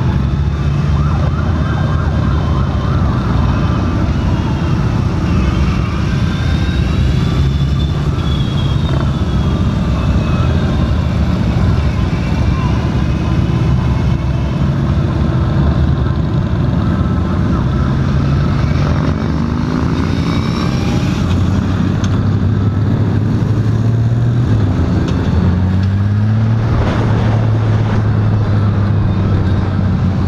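Honda Valkyrie F6C's flat-six engine running on the move as heard from the rider's seat, with wind noise, its note stepping up and down with throttle and gear changes, among a group of other motorcycles. A siren wails in the background at times.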